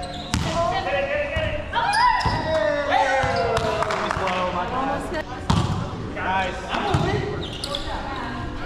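Indoor volleyball rally: sharp hits of hands on the ball and ball impacts several times, mixed with players' wordless shouts and calls, echoing in a large gym hall.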